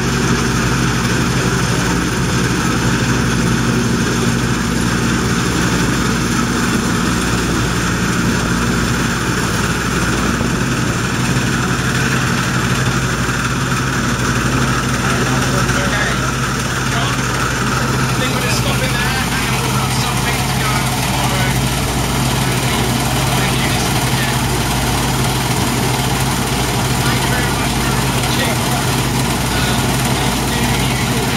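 The engine and machinery of a 1991 Sampo-Rosenlew 130 combine harvester running steadily. A higher rushing noise eases about two-thirds of the way through.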